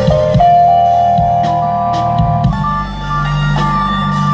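Live jam band amplified through a PA: a lead line held in long notes that step in pitch, over electric bass and drum kit hits.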